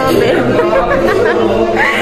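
Many people talking at once, their voices overlapping into steady chatter in a large room.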